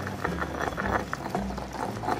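Stone pestle grinding roasted green chillies in a stone mortar: a run of short, irregular grinding strokes over a steady musical bass line.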